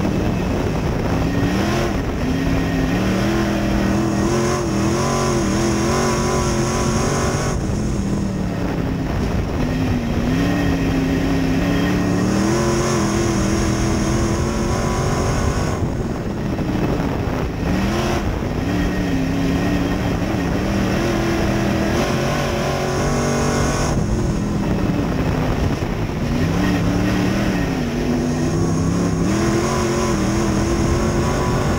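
602 crate V8 engine of a dirt-track sportsman race car heard from inside the cockpit at racing speed. The revs dip and climb again roughly every eight seconds as the car lifts for each turn and accelerates down the straights.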